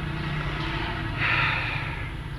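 A vehicle's engine running steadily while driving, heard from inside the cab as a low hum. A brief hiss rises over it a little past halfway.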